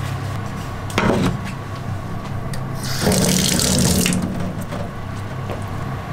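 Water runs from a kitchen tap into a steel sink for about a second, after a short knock at the counter. A steady low hum runs underneath.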